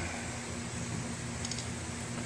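Steady low hum and hiss of room noise, like a fan or air conditioner running, with a faint light click about one and a half seconds in.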